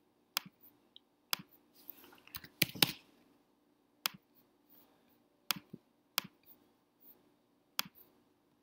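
Short, sharp computer clicks scattered about a second apart, one a quick double click, from a mouse and keyboard while drafting in software.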